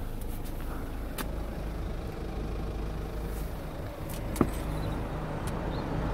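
BMW 520d's four-cylinder diesel engine idling, a steady low hum heard from inside the cabin, with a single sharp click about four and a half seconds in.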